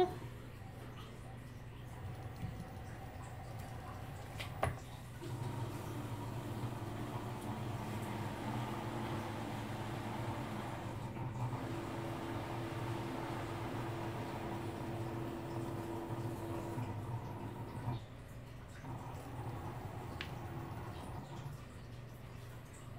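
Cricut Maker 3 cutting machine's motors running as it loads the vinyl mat, drawing it through the rollers and back with a steady hum. A click comes about four and a half seconds in. The motor runs louder from about five seconds until about eighteen seconds, then drops back.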